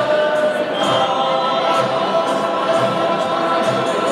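Choral music with voices holding sustained chords at a steady level.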